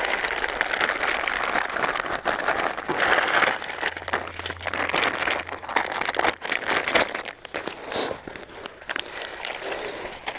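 Plastic ration packaging crinkling and rustling as it is handled, with irregular crackles throughout.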